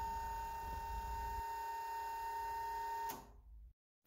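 Electric hydraulic tipper pump, salvaged from a Transit tipper, running with a steady whine as it forces fluid into the single-stage ram to raise the tipper body. It cuts off suddenly about three seconds in.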